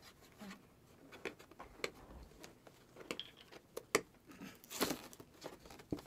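A gift box's paper wrapping being unwrapped by hand: fairly quiet, irregular crinkling, rustling and tearing with a few sharp clicks, loudest at about five seconds in.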